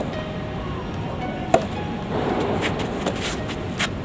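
Soft tennis rally: the rubber ball is struck sharply by a racket about a second and a half in and again near the end. Fainter ticks of bounces or footsteps fall between the hits, over a steady background hiss.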